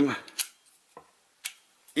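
A few short, sharp metal clicks as a lighter insert is pushed into the grip of a homemade pistol-shaped lighter. The clicks fall about half a second in, faintly at one second, and loudest about one and a half seconds in.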